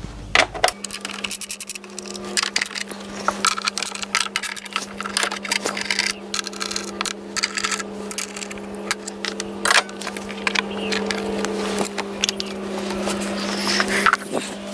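Hand ratchet and socket clicking and metal tools clinking while the engine cover bolts are undone and the plastic cover is lifted off, irregular sharp clicks and knocks throughout over a steady low hum.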